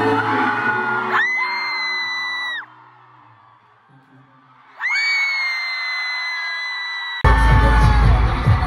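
Live K-pop concert sound: singing over the backing track, cut through twice by a long, piercing high-pitched scream from a fan close by, with a quieter gap between the two. Near the end the sound jumps abruptly to louder, bass-heavy music.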